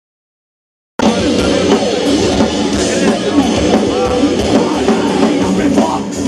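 Silence, then a heavy metal band cuts in suddenly about a second in, playing loud with a full drum kit.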